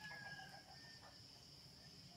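Faint, steady, high-pitched insect drone, with a brief faint whistled tone at the start.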